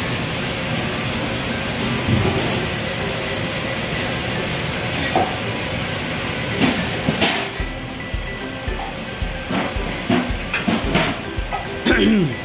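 Steady roar of a restaurant wok range's burner under a wok of boiling, bubbling liquid, with a ladle working in the wok. About two-thirds of the way in, a regular beat of low thumps sets in, about two a second.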